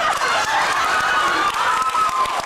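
A man's high falsetto voice shrieking in one long, wavering cry, with audience laughter.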